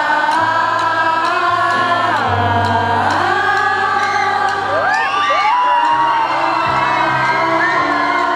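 Live pop music: a band with long held sung notes in several voices over steady bass notes, with a cheering crowd.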